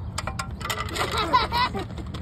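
Sharp metallic clicks of ostrich beaks pecking at a metal feed trough, several in quick succession near the start, followed by a person's voice.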